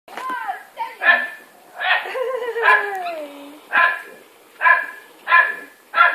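Labrador retriever barking excitedly in short repeated barks, about one a second.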